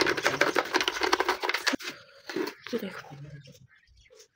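Toothbrush bristles scrubbing the inside of a Panasonic juicer's plastic motor housing: quick scratchy strokes for about the first two seconds, then sparser, softer brushing.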